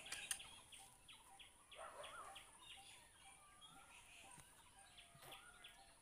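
Faint chirping of small birds: a quick run of high chirps at the start, then scattered calls and short whistles.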